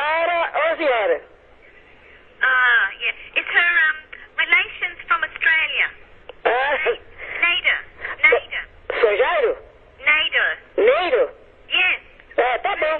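Speech only: voices talking over a telephone line, with a short pause about a second in.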